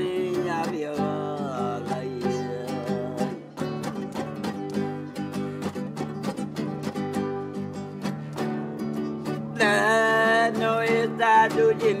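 A man singing a caipira-style song to his own strummed acoustic guitar. The voice is heard at the start and comes back strongly near the end, with a stretch of steady guitar strumming in between.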